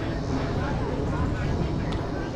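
Softball field ambience: a steady low rumble with indistinct voices of players calling out, and one short sharp click near the end.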